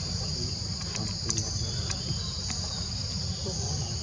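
Steady high-pitched drone of insects, crickets or cicadas, in two close bands, over a low rumble.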